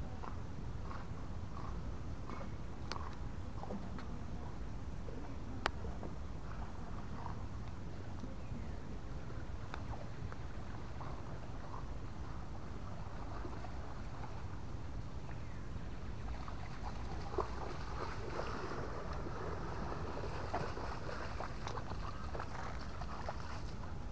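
Faint splashing and rustling of a dog swimming to the creek bank and pushing up through brush, over a steady low outdoor rumble; a few small ticks are scattered through it, and it grows busier in the last several seconds.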